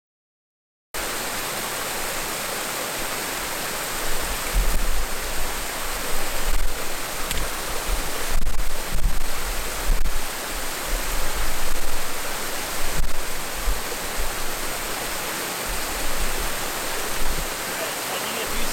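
Small waterfall on a rocky creek giving a steady rushing sound, cutting in suddenly about a second in. From about four seconds in, irregular deep rumbles swell and fade beneath the rush.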